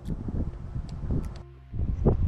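Wind buffeting the microphone in uneven low gusts, with a few light clicks; the rumble drops away briefly about a second and a half in.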